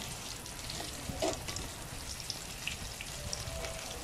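Breaded chicken pieces frying in hot cooking oil in a steel pot: a steady sizzle full of small crackles. A brief clack stands out about a second in.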